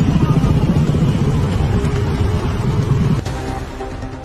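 Low rumble of vehicle engines and street noise mixed with background music; about three seconds in the rumble drops away, leaving only music with steady held notes.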